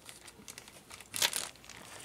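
Clear plastic bag of small electrolytic capacitors crinkling as it is handled, faint, with a louder rustle a little past a second in.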